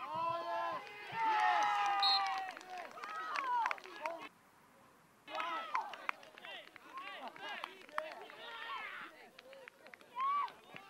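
Excited shouting and cheering from several voices as a football goal goes in, with one long held cry about a second in. The voices drop out briefly near the middle, then shouting picks up again.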